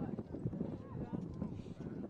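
Distant voices of footballers calling on the pitch over a run of irregular low knocks and rumble.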